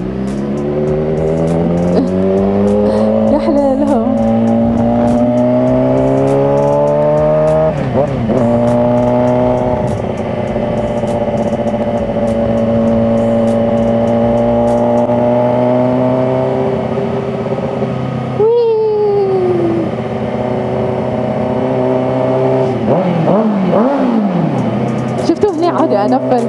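Suzuki GSX-R sport-bike engine heard from the rider's seat. Its note climbs steadily under acceleration over the first few seconds, breaks for a gear change about eight seconds in, then holds fairly steady at speed, with a sharp dip in pitch about two-thirds of the way through.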